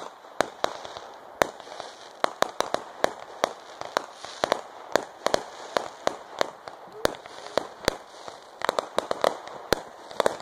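Fireworks going off in a rapid, irregular run of sharp bangs, about three a second, with crackling between them.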